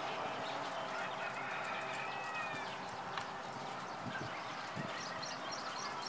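Faint outdoor background of scattered bird chirps over a steady low hum, with one longer drawn-out call about two seconds in.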